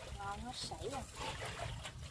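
Quiet speech, with a farm animal calling faintly in the background.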